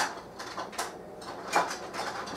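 Light clicks and knocks of a kitchen drawer and utensils being handled while a teaspoon is fetched, the sharpest right at the start and another about one and a half seconds in.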